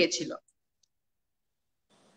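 A woman's voice trailing off, cut off suddenly less than half a second in, then dead silence broken only by two faint clicks.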